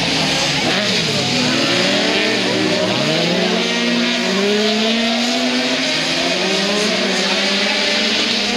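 Several autocross cars, Sprinter buggies and lowered VW Beetles, racing on a dirt track. Their engines rev up and down as they pass, several engine notes overlapping.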